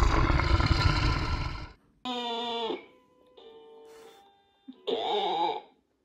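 Edited sound effects with a little music: a loud rushing noise for nearly two seconds, then a short pitched sound that falls slightly, a few soft sustained notes, and another short noisy burst near the end.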